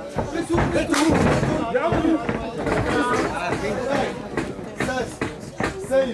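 Indistinct voices of people talking and calling out at once in a hall, with a few sharp knocks among them.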